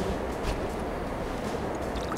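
Steady background noise with a low rumble and a few faint ticks, without any distinct event.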